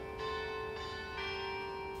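Church bells ringing, with fresh strokes about a second apart over a long hum.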